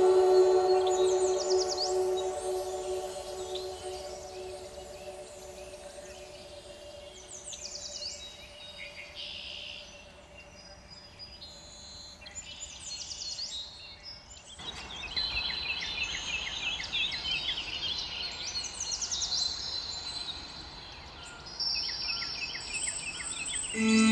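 Music fading out over the first few seconds, leaving birds chirping and singing over a soft hiss. The chirps come as quick runs of short high notes throughout, and the hiss grows louder about halfway through.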